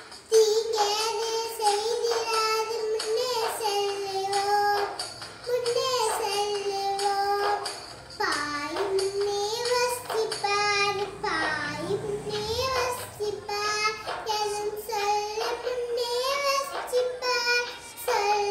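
A young girl singing a Tamil song solo, in phrases of long held notes that waver slightly, with short breaks for breath between them.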